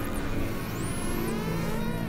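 Psy-trance track intro: a steady low synth drone under high whistling sweeps that glide up and down.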